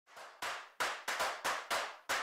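A run of sharp percussive hits, each dying away quickly, in an uneven rhythm of about three to four a second: the percussion opening an intro music theme.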